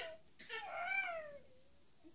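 Jack-Jack baby doll toy playing its recorded baby voice, set off by a touch: one drawn-out coo, starting about half a second in, that rises and then falls in pitch over about a second.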